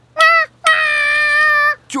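A cartoon monkey's voice calling out: a short, high, steady-pitched call, then a longer held one at the same pitch.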